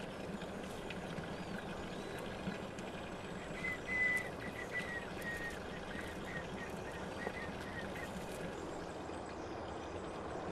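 Outdoor ambience: a steady low background hiss, with a small bird chirping a run of short high notes from about three and a half seconds in until about eight seconds.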